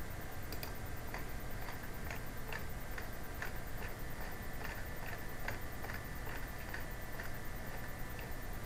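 Faint, even ticking, about two ticks a second, over a low steady hum.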